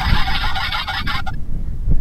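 Simulated engine sound from the Yigong YG258C RC excavator's built-in speaker: a steady electronic engine hum that cuts off suddenly about a second in as the engine sound is switched off from the remote.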